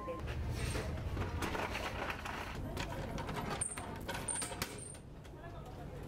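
Indistinct background voices with handling clatter and clicks, and three short high chirps in the second half.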